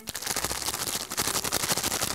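A large Nestlé Crunch chocolate package being shaken, the chocolate rattling and the plastic wrapper crackling in a rapid, unbroken run of clicks lasting about two seconds.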